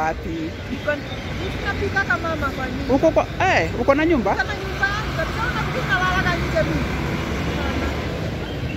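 Steady low rumble of street traffic under a woman's voice talking.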